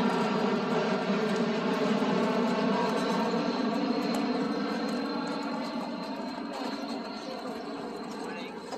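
A steady engine drone with a stack of even tones, slowly fading away over the second half.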